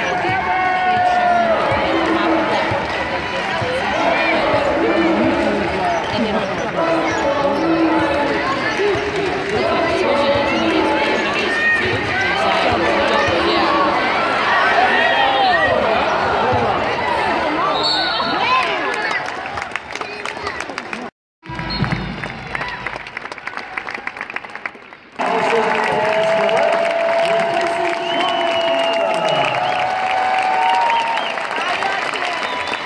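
Courtside sound of a basketball game: a ball bouncing on the hardwood floor, sneakers squeaking, and a crowd talking in a large arena, broken by a brief dropout a little past two-thirds of the way in.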